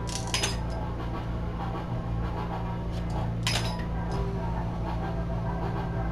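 Clear glass rods being snapped to length by hand: two sharp snaps with a brief ring, about half a second in and again about three and a half seconds in, over a steady low hum.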